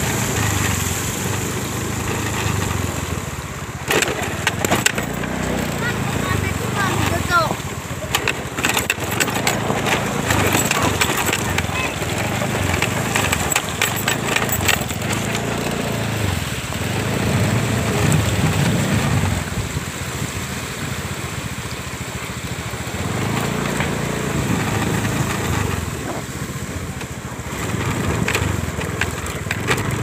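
Small motor scooter's engine running unevenly at low speed as it rides through shallow floodwater, with scattered sharp splashing and clicking sounds.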